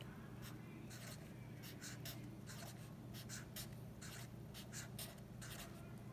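Felt-tip marker on paper, faint: a run of short strokes as boxes are drawn and numbers written in them.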